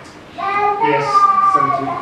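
An indistinct, fairly high-pitched voice speaking for about a second and a half, starting about half a second in: a listener in the room prompting the lecturer, who then answers "yes".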